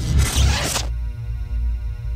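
Whoosh sound effect of a logo sting: a noisy swish lasting about the first second, then a held, bass-heavy musical chord.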